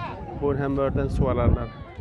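A man's voice speaking over outdoor crowd noise, with a high, rising cry just past the middle.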